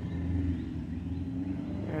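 A steady low rumble with a faint hum.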